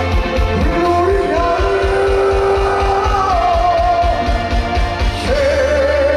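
Live rock music: electric guitar and a held, bending melody line over a fast kick-drum beat. The drums stop about five seconds in, leaving a sustained note ringing.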